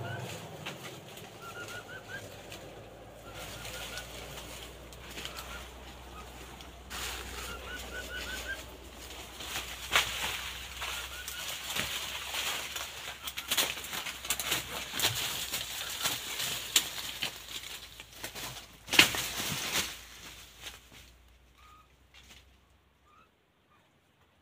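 Birds giving short rising chirps in quick little runs, followed by a long spell of rustling and wing-flapping in the bamboo and leaf litter, with a sharp loud burst of flapping a few seconds before it dies away.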